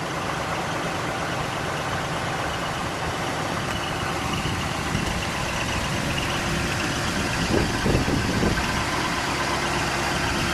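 1959 Ford Fairlane 500 Galaxie Skyliner's 332 cubic-inch V8 running steadily at low speed as the car rolls slowly forward.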